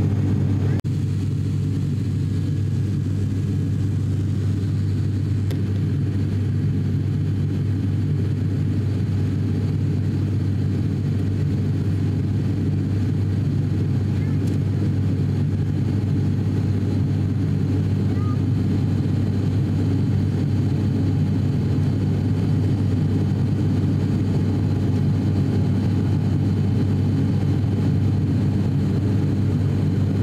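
Cabin drone of an ATR 42-600 turboprop in flight: a steady, loud low hum of the propellers and turboprop engine, with several even tones stacked above it. A brief dropout about a second in.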